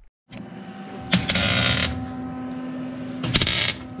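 Welder tack-welding a sheet-steel patch into a rusted truck cab floor: two short bursts of arc crackle, one about a second in and a shorter one near the end, over a steady hum.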